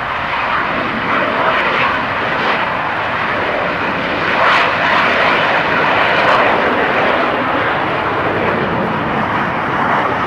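Hawker Hunter's single Rolls-Royce Avon turbojet at takeoff power during the takeoff roll and lift-off: a loud, steady jet roar that swells a little about halfway through.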